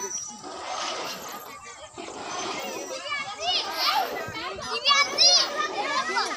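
Children's voices calling and shouting over one another as they play, with busier, louder high-pitched calls in the second half.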